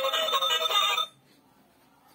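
Toy telephone playing an electronic tune through its built-in speaker, which cuts off abruptly about a second in.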